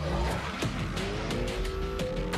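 Commercial soundtrack: music with a steady beat of about three hits a second, mixed with a car engine revving, rising in pitch in the second half.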